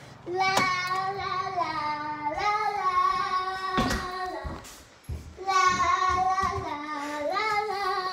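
A young girl singing "la la la" in two long phrases of held notes that step down and back up, with a short break about five seconds in.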